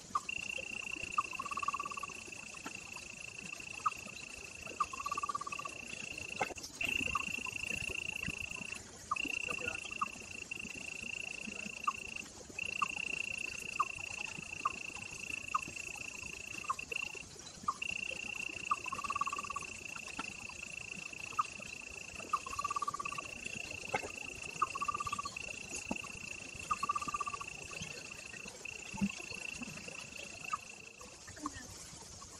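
Steady, high-pitched insect chorus that cuts out briefly every few seconds, with short chirps and a few longer calls scattered through it.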